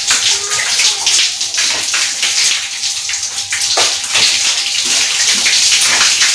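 Bucket bath: water scooped from a bucket and poured over the body with a mug, splashing steadily onto a concrete floor.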